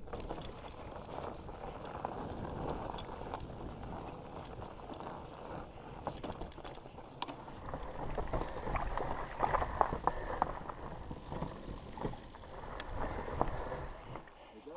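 Rushing wind on a helmet-mounted action camera and tyres rolling over a dirt trail as a mountain bike rides fast downhill, with knocks and rattles from the bike over roots and rocks that come thicker and louder in the second half.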